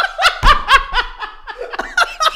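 A man laughing hard, a quick run of short pitched bursts of laughter.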